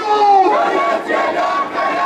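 A large crowd of marchers chanting slogans together in Arabic, many voices rising and falling in unison.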